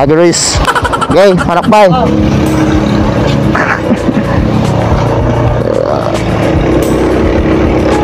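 A voice calls out briefly in the first two seconds, then a 2021 Honda PCX160 scooter's single-cylinder engine runs steadily as the scooter pulls away and rides down the street, with a short rise in pitch as it gets going.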